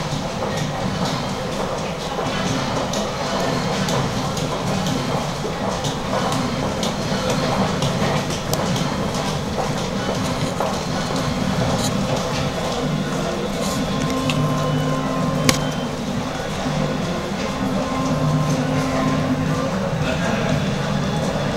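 Steady din of a busy shop, voices and music blended together, with one sharp click about three-quarters of the way through.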